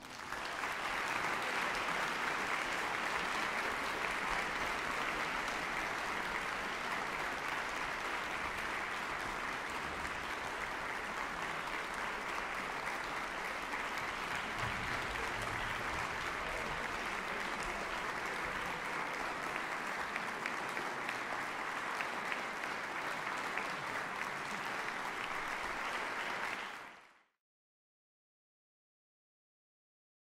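Audience applauding steadily in a concert hall, cut off by a quick fade near the end.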